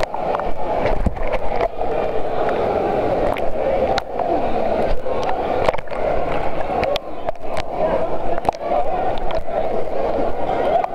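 Churning, splashing pool water heard through a camera held at and partly under the surface, a steady dense rush with many small sharp knocks as water slaps against the camera.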